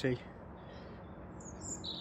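Steady distant road-traffic hum, with a small bird chirping high and quick from about one and a half seconds in.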